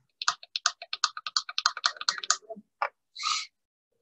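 Rapid clicking of typing on a computer keyboard, about ten keystrokes a second for about two and a half seconds, followed by a short hiss near the end.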